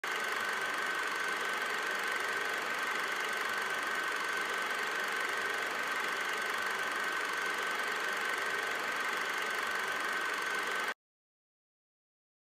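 Steady static hiss with a constant high whine running through it, cutting off abruptly about eleven seconds in.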